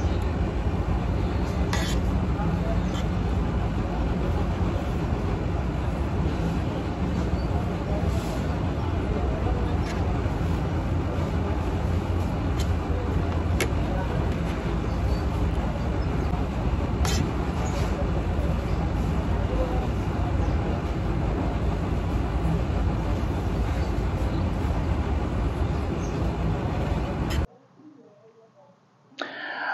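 Steady outdoor city noise with a heavy, fluctuating low rumble, like wind on the microphone over traffic, with a few light clicks of a fork on a plate. It cuts off abruptly just before the end.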